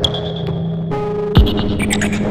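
Electronic music: droning synthesizer tones over a low hum, with a high held tone that cuts off a little under a second in and a sharp downward pitch sweep, the loudest moment, about halfway through.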